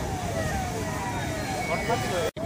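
Several onlookers' voices talking and calling out at once, over a steady rushing noise around the fire.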